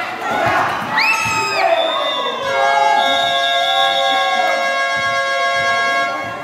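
Spectators shouting and cheering, with a high held cry about a second in, then a steady horn or buzzer tone held for about three and a half seconds over the crowd.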